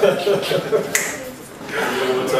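Indistinct men's voices with a sharp snap about a second in, the finger snap of a handshake between two men.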